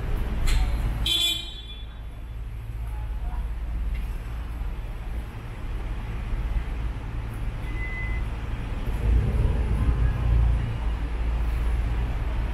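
City street traffic running past, with a brief high-pitched toot about a second in and a vehicle passing louder near the end.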